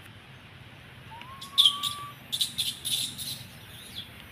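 Wild birds chirping: a quick series of short, high chirps starting about a second and a half in, after one drawn-out whistled note that rises and then holds.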